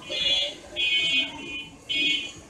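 Felt-tip marker squeaking across drawing paper as lines are drawn, in three high-pitched strokes about half a second each.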